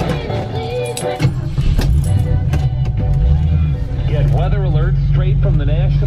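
Car radio playing music through the cabin speakers, the song changing about a second in and a voice starting about four seconds in, over the low, steady running of the Cougar's engine.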